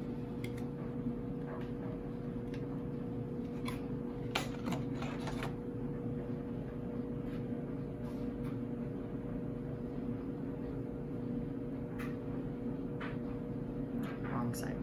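A steady low hum, with a few small clicks and rustles from handling a feather quill pen and fitting its metal nib, several in a quick cluster about four to five seconds in.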